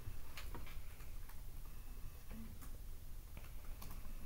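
Scattered light clicks and ticks at irregular intervals over a steady low hum.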